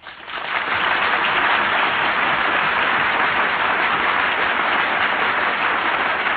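Audience applause that builds over the first second and then holds steady.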